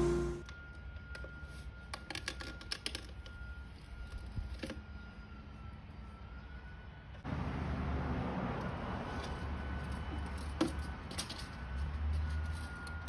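Faint background with scattered light clicks and taps, and a thin steady high tone through the first several seconds. A louder rushing noise comes in suddenly about seven seconds in.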